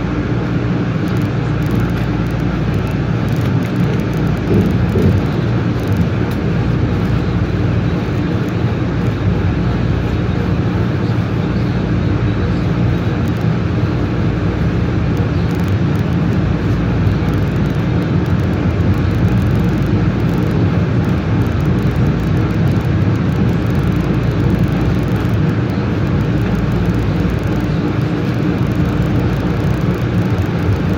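MBTA Green Line light-rail train running through a subway tunnel, heard from inside the car: a loud, steady rumble of wheels on rail with a low hum underneath.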